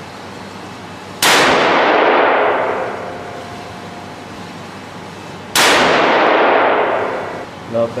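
Two shots from a Remington 700 ADL bolt-action rifle in .270, about four seconds apart, each a sudden loud crack with a long echoing tail from the indoor range.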